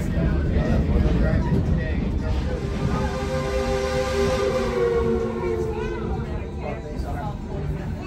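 Passenger train car rolling on the rails with a steady low rumble. About three seconds in, the steam locomotive's whistle sounds for a little under three seconds, a chord of several steady tones with a hiss of steam.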